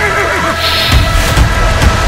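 A horse whinnying once, a wavering call that falls in pitch through the first second, over background music with a steady beat.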